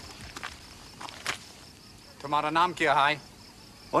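Crickets chirping steadily in a drama's soundtrack. About two seconds in, a voice briefly speaks a few words over them.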